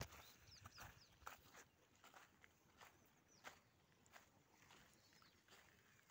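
Near silence, with faint, irregular footsteps on soft soil and grass.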